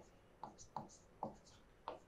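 Stylus writing on an interactive whiteboard screen: several short, faint scratching strokes as a word is hand-written.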